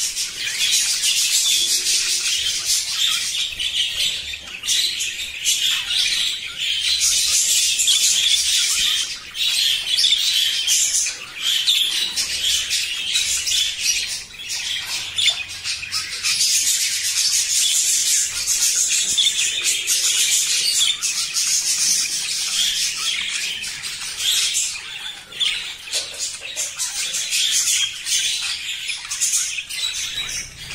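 Hagoromo budgerigars, a Japanese frizzle-feathered budgie variety, chattering and warbling almost without a break, with only short pauses.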